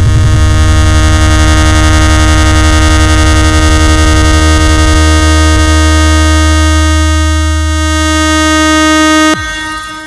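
DJ remix music: one loud, held electronic chord with a horn-like edge over heavy bass. A rapid bass pulse runs through the first half, the bass then holds steady, and everything cuts off suddenly shortly before the end.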